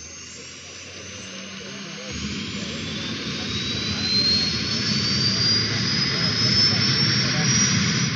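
Helicopter turbine engine starting up: a whine rises steadily in pitch as the engine spools up. From about two seconds in, a low churning from the rotor joins in and grows louder as the blades begin to turn.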